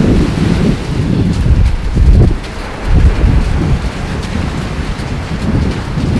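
Wind buffeting the microphone: a loud, gusting low rumble that swells strongest about two seconds in, with faint scattered clicks above it.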